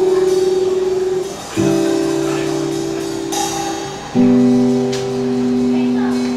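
Unplugged rock band playing live: acoustic guitar chords strummed and left to ring, a new chord about every two and a half seconds, with light drums behind.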